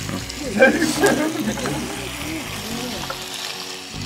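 Meat sizzling as it fries in a hot pan and is turned with tongs.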